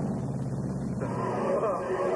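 Steady low drone of an airplane's engines. About a second in it breaks off and a voice takes over.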